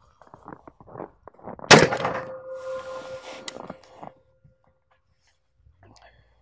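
A single .308 rifle shot about one and a half seconds in, followed by a steady ringing tone that fades out over about two seconds.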